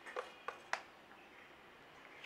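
Three light knocks in quick succession, then quiet room tone.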